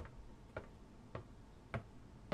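Faint, evenly spaced ticks, nearly two a second, each sharp with a soft low knock under it: a steady ticking sound effect.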